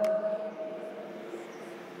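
A man's voice trails off on a held vowel in the first half-second. Then come faint marker strokes on a whiteboard over a low steady room hum.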